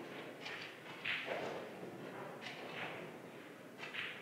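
Faint room noise of a large hall with a few soft, brief sounds scattered through it and a small tap near the end.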